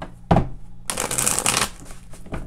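A deck of oracle cards being shuffled by hand: a single knock about a third of a second in, then a dense burst of shuffling that lasts most of a second.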